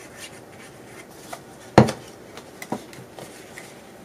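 Quiet handling of paper and card on a wooden tabletop, with one sharp knock a little under two seconds in as an object is put down on the table, and a few fainter taps.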